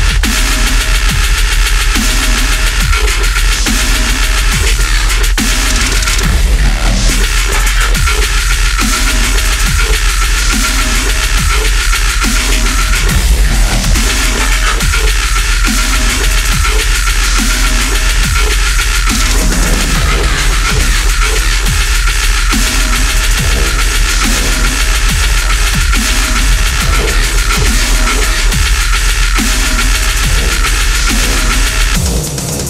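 Deathstep (heavy dubstep) electronic track with a constant deep sub-bass and a dense, loud mix. A short figure recurs about once a second throughout.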